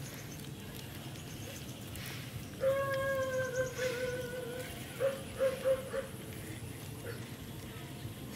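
Baby macaque calling: one long, slightly wavering coo about two and a half seconds in, then three short coos in quick succession about a second later.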